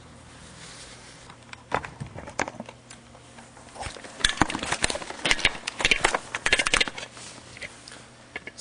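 Handling noise of a video camera being picked up and turned round: after a faint steady hum, scattered clicks about two seconds in, then a dense run of knocks and rubbing against the body and microphone from about four to seven seconds.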